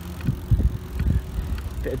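Full-suspension mountain bike rolling over tarmac, with a steady low rumble and irregular low thumps of wind buffeting the microphone. A few words are spoken near the end.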